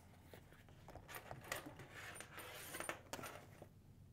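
Faint handling sounds of a TIG welding torch and its cable being put down on a table: soft rustling with a few light clicks, busiest in the middle.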